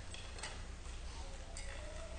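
A quiet congregation partaking of communion bread: a few small, sharp clicks and rustles over a low, steady electrical hum.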